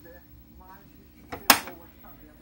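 Hinged plastic control-panel cover of a Sharp C-1490A television being pressed shut. A small click comes first, then a sharp snap about a second and a half in.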